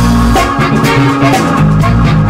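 Funk band playing live, with a bass guitar line and drum kit keeping a steady beat. It is loud, recorded on a mobile phone.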